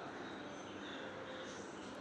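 Faint, steady background hiss with no distinct sounds, apart from a tiny high tick near the end.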